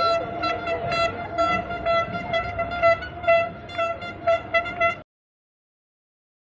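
A horn sounding a single pitched note in many short, uneven blasts over street noise, cut off suddenly about five seconds in.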